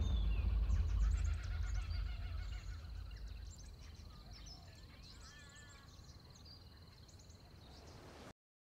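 Outdoor ambience of birds chirping and calling, with a steady high-pitched whine, over a deep rumble that dies away over the first few seconds. The whole bed fades steadily toward the end.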